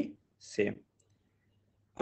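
A man's voice says one short word, then near silence with only faint room hum.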